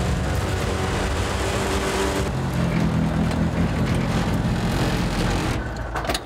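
Polaris RZR Pro R side-by-side's four-cylinder engine running under way on pavement, heard from inside the open cab with wind and road noise; the engine note drops to a lower pitch about two seconds in.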